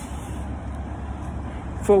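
Steady low background rumble of the street, with a faint hiss above it. A man's voice starts just before the end.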